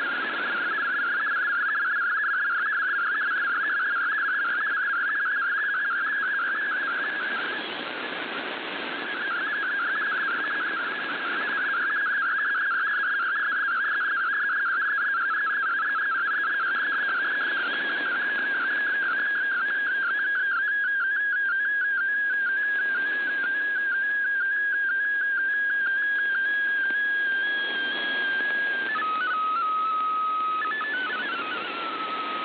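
Shortwave digital-mode picture transmission (fldigi MFSK image) decoded from an AM receiver: a warbling, whistle-like tone whose pitch shifts rapidly as it carries the image's pixels, heard over shortwave hiss that swells and fades every few seconds. Near the end the warble settles into a steady tone, then steps down to a lower tone.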